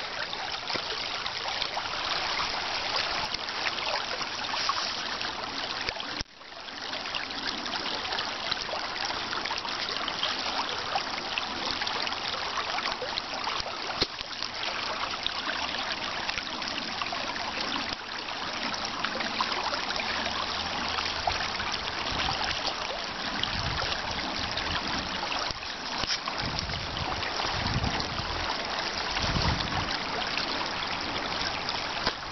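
Creek water running steadily, a constant rushing hiss. It drops out briefly about six seconds in, and low rumbling thumps come and go over the last several seconds.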